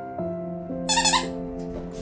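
Background music of soft held notes that change pitch slowly. About a second in comes a brief high-pitched squeal.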